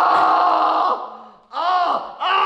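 A man's long, held cry of pain as a dried peel-off face mask is pulled off his skin, fading out about a second in. A shorter cry that rises and falls in pitch follows near the end.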